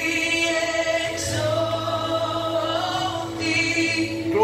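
Background music: a choir singing long held notes over a steady sustained tone.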